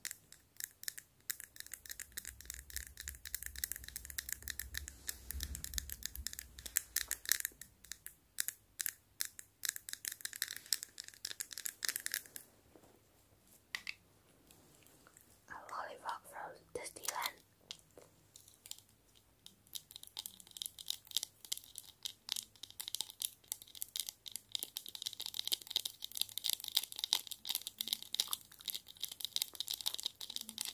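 Long acrylic fingernails tapping rapidly on hard plastic light-up toys, a fast run of sharp clicks that pauses about halfway through and then starts again.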